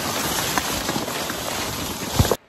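Leafy branches brushing and scraping against a handheld camera and its microphone while pushing through dense brush: a steady rustle full of small crackles.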